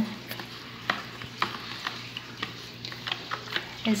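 A fork stirring a wet flour-and-margarine dough mixture in a plastic bowl, with irregular scraping and sharp clicks as it knocks against the bowl.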